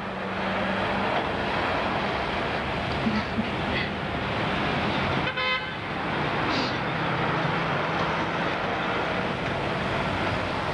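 Steady city street traffic noise, with one short car horn toot about halfway through.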